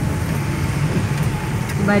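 Steady low rumble of a car's engine and tyres on a wet road, heard from inside the cabin while driving.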